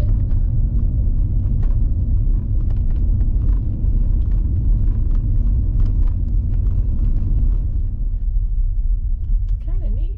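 Low, steady rumble of road and engine noise inside a Honda sedan's cabin while driving on the highway.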